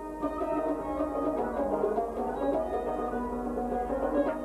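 Traditional Kashmiri instrumental music: a harmonium holding sustained chords while a string instrument and hand drum play steady, regular strokes over it.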